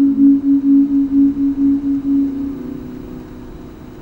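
White electric guitar's held note ringing on, pulsing about three times a second, then fading away from about two and a half seconds in.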